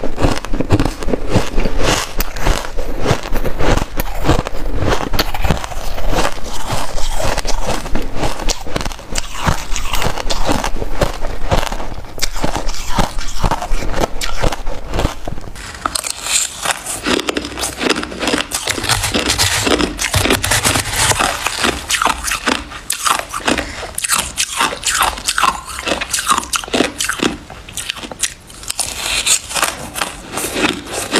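Close-miked biting and chewing of white shaved ice: a dense, continuous run of crunches as the icy chunks are crushed between the teeth.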